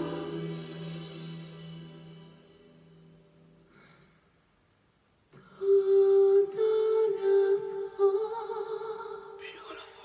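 A male singer's held, wavering note from the TV performance fades out over the first few seconds. After a short silence, a man hums a melody close by, holding notes and stepping up in pitch, louder than the song was.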